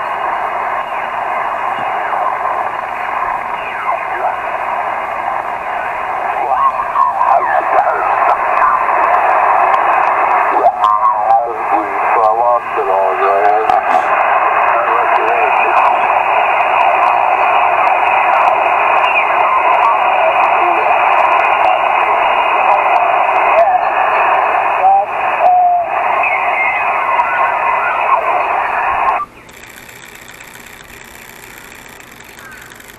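Elecraft KX2 transceiver's speaker playing 20-metre single-sideband band audio: narrow, telephone-like hiss with distorted voices of distant stations as the receiver is tuned across the band. Mistuned voices warble up and down in pitch midway, and the receiver audio cuts off suddenly just before the end.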